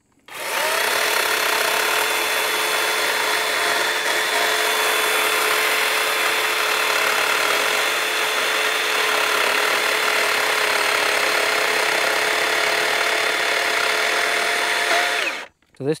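DeWalt 60V brushless battery chainsaw cutting through a log. It starts about a third of a second in and stops near the end. The motor's pitch holds steady through the whole cut, which fits a chain speed that stays consistent under pressure rather than bogging down or surging.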